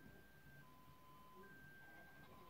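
Near silence: faint room tone, with a few faint held tones alternating between a higher and a lower pitch.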